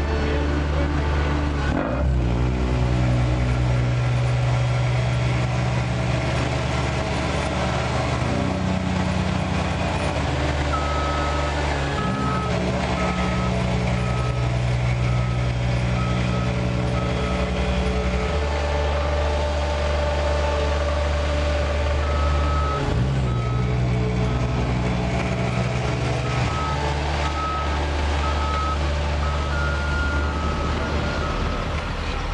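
Diesel engine of a small CAT tandem asphalt roller running steadily as it compacts a fresh asphalt patch, its note changing several times as it works back and forth. From about a third of the way in, a reversing alarm beeps over and over.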